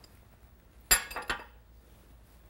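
Metal globe-valve parts clinking together as the bonnet comes off the stem assembly: one sharp ringing clink about a second in, followed quickly by two lighter ones.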